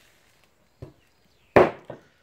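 A knife chopping eel on a round wooden chopping block: three chops, a light one about a second in, then the loudest and a lighter one close together near the end.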